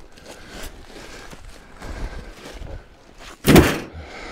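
Footsteps through dry leaf litter and brush, with light rustles and clicks, then one loud crunch about three and a half seconds in as a boot lands close by.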